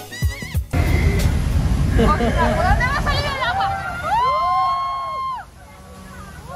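A heavy low rumble from the canyon's special effects starts about a second in and cuts off suddenly near the end. Over it, voices call out excitedly, with one long drawn-out call just before the rumble stops.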